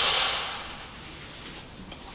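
A brief rustle, strongest at the start and fading within the first second, then faint scuffing movement in a quiet room.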